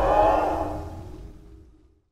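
Tail of a cinematic intro sting: a deep rumble under a held chord, dying away over about two seconds.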